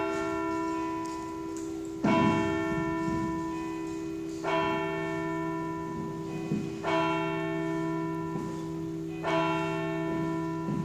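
A church bell tolling, struck four times about every two and a half seconds, each stroke ringing on into the next.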